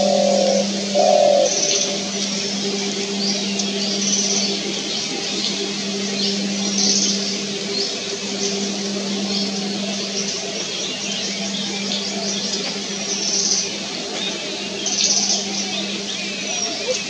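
Spotted dove cooing, with two short low coos right at the start, while small birds chirp high above throughout. A steady low hum runs underneath.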